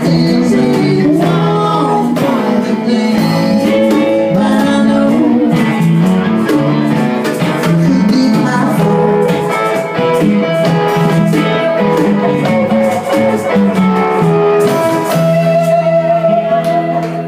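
Live band music: acoustic and electric guitars playing over congas, a steady groove with a guitar line moving above the chords.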